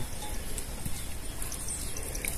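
Steady, fairly quiet outdoor background noise with no distinct call, knock or voice standing out.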